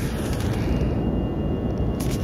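A steady, loud low rumble with no clear strokes or pitch.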